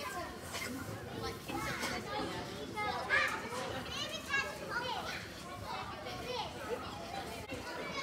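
Several children's voices chattering and calling out at once, the general hubbub of a busy animal barn.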